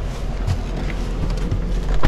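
Someone getting into the driver's seat of a car: rustling and handling knocks, two soft knocks, then a loud thump near the end, after which the background hiss drops.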